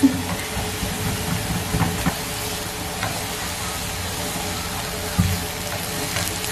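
Shimeji mushrooms and sliced onion frying in butter in a pan, giving a steady sizzling hiss. A silicone spatula stirring them makes a few soft scrapes and knocks.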